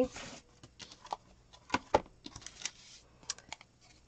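Paper cards and clear acrylic stamp blocks being shifted and set down on a cutting mat: light, scattered taps and clicks, the sharpest two close together about two seconds in.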